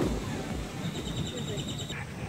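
A small bird trilling: a rapid, even run of high chirps lasting about a second in the middle, over low voices and outdoor background.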